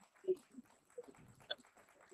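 Faint, scattered voices of people in a hall, heard as short broken fragments rather than clear words, coming through a video-call audio link.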